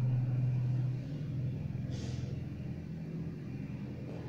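A steady low mechanical hum, like a motor or engine running, loudest in the first second and then a little softer, with a brief soft hiss about two seconds in.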